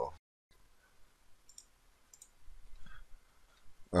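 Quiet room tone with a few faint, short clicks about a second and a half and two seconds in.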